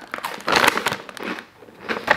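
Biting into and chewing a crisp piece of brownie brittle close to the mic, a run of crunches in the first half that fades, with the plastic snack bag crinkling in hand.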